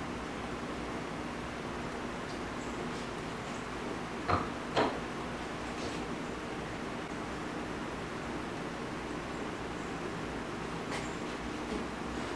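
Two sharp metal clicks about half a second apart, a little over four seconds in, from the aluminium triple injector being worked against the aluminium mold, over a steady room hum.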